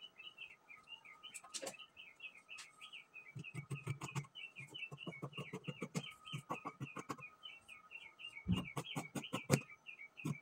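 Scissors snipping through fabric in quick runs of cuts, starting a few seconds in, over steady rapid bird chirping.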